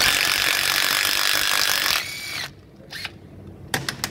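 Impact wrench undoing a bolt on a pickup's front hub, running loud for about two seconds. It then winds down with a falling whine. A couple of light metallic clicks follow near the end.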